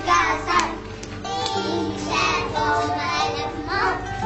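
Children singing over background music with steady held tones.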